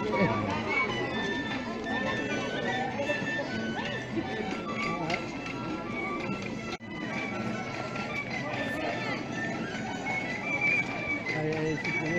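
Festival street band playing a dance tune with long, held melody notes, with voices of a crowd talking around it.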